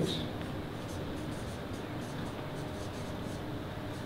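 Marker pen writing on a flip-chart pad: a quick run of short, faint scratchy strokes on the paper.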